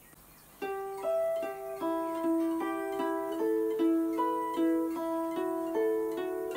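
Electric guitar playing a picked single-note riff that alternates fretted notes on the G string with the open high E string, the notes ringing over one another. It starts about half a second in, at about two and a half notes a second.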